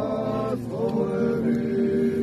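Orthodox liturgical chanting by voices, sung in long held notes, moving to a new note about half a second in.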